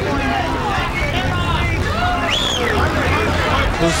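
Boxing arena crowd noise: many voices talking and shouting over a steady low rumble, with one high call rising and falling about halfway through.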